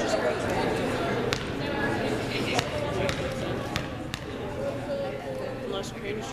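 Indistinct voices chattering in a gymnasium, with a few separate sharp knocks of a basketball bouncing on the hardwood court.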